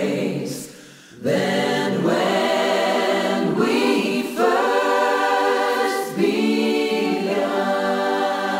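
A choir singing slow, long-held phrases. The sound dips briefly just under a second in, and new phrases begin about a second in and again near the middle.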